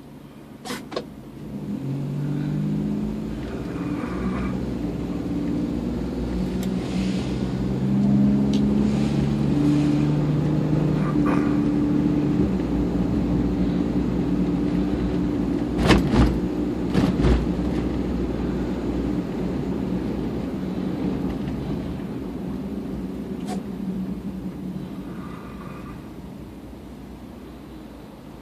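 Car engine and road noise heard from inside the cabin: the engine note climbs in steps as the car accelerates, then evens out and fades as the car slows. There are a couple of sharp clicks about a second in and a few knocks around the middle.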